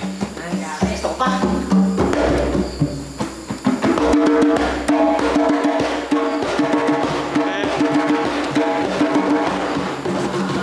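Djembe hand drumming: a rhythm pattern of quick strokes played on a goblet hand drum as a demonstration. From about four seconds in, background music with a steady held chord joins the drumming.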